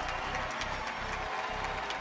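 Steady background bed of crowd applause and cheering mixed with music.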